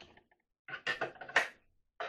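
A quick run of clattering knocks on a plastic bucket trap and its plank as a rat is set down on the plank and scrabbles. It starts about two-thirds of a second in and peaks sharply near the end of the run.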